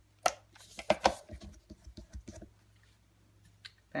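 Cardstock being handled on a desk with a hand-held Fast Fuse adhesive applicator: a few sharp clicks and taps in the first second, then lighter ticks and rustles that die away about halfway through.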